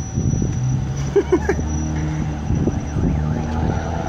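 A car engine running close by at a steady low pitch that shifts a little partway through.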